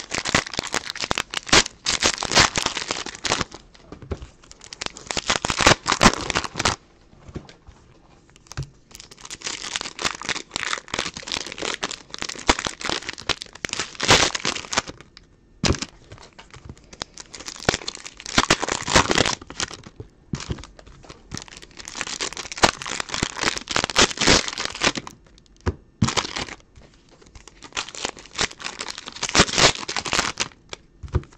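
Donruss Optic Football trading-card pack wrappers crinkling and tearing as they are opened by hand, in bursts of a few seconds with short pauses between.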